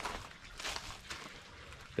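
Faint footsteps on gravel, a few soft steps over light outdoor background noise.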